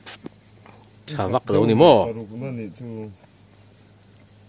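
A person's voice for about two seconds in the middle, rising and falling in pitch, after a few soft clicks near the start.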